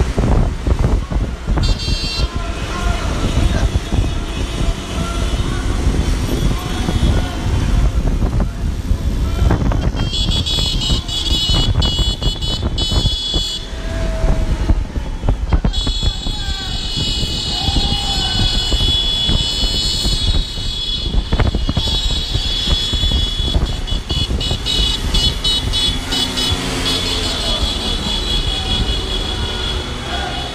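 Street traffic heard from a moving vehicle: motorcycle and car engines with a steady low rumble of wind on the microphone. Vehicle horns sound repeatedly and at length from about ten seconds in.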